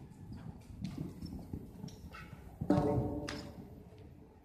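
Horse hooves thudding on the soft sand footing of an indoor arena, irregular and muffled. About two-thirds of the way through, a brief loud pitched call rises over the hoofbeats and fades within about half a second.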